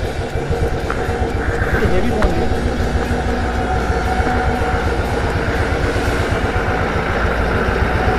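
Motorcycle engine idling with a steady low pulse, while a heavy truck's engine approaches and draws close by the end.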